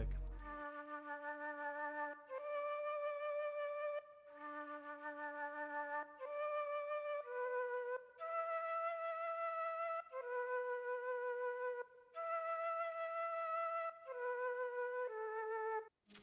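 Software flute instrument playing a slow melody of held notes in short phrases, with reverb and panning left and right. In the second half the part is pitched up.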